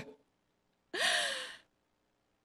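A woman's short breathy sigh into a handheld microphone, about a second in: one exhale lasting under a second, with a faint voiced pitch that rises then falls.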